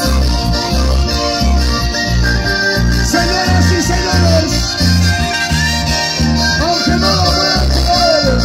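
Live orquesta music played loud through the PA: a horn section plays the melody over a steady, pulsing bass beat, with no singing.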